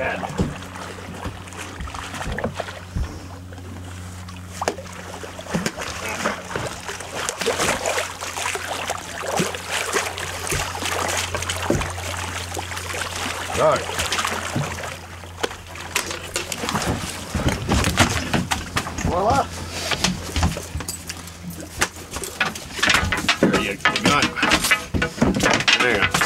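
A large halibut, gaffed alongside the boat, thrashing and splashing at the surface, then knocking against the hull and deck as it is hauled aboard, with many sharp knocks from about six seconds in. A steady low hum from the boat runs under the first part.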